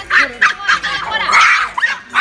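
Toy poodles barking excitedly: a quick run of short, high yapping barks, with a longer burst in the middle.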